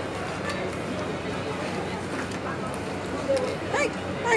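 Indistinct chatter of shoppers over a steady low hum, with a few faint clicks of clothes hangers as garments are pushed along a rack. A woman's voice speaks near the end.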